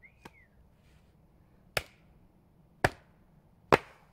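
Three sharp strikes into wood about a second apart, the last the loudest: firewood being chopped or split into kindling. A short high chirp sounds right at the start.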